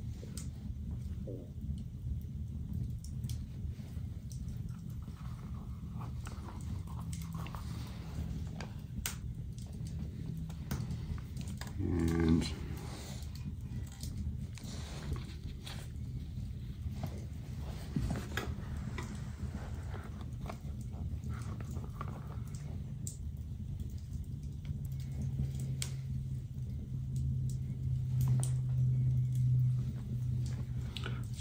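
Hand saddle stitching of leather: scattered small clicks and rustles as needles and thread are pushed through punched holes and drawn tight, over a steady low hum.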